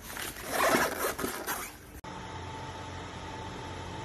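Rustling and scraping of hands handling the unpacked induction cooker and its plastic packaging. After a sudden cut about halfway, the Pensonic PIC-2005X induction cooker runs under a pot: a steady fan hum with a thin, steady tone over it.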